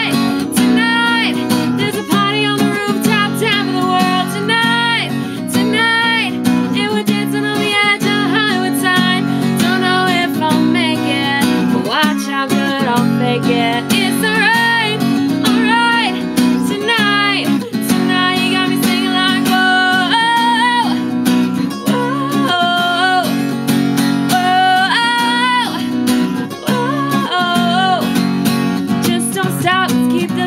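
A woman singing a pop song while strumming chords on an acoustic guitar, the strummed chords carrying on steadily under her voice.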